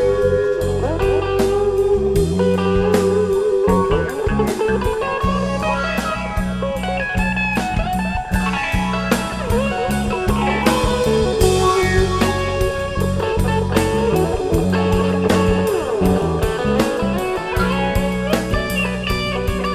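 Live rock band instrumental break: an electric guitar plays a lead line with bent, sliding notes over bass guitar and drum kit.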